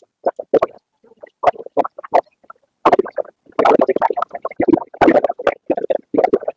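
Muffled, unintelligible talking in short broken bursts, heavier in the second half.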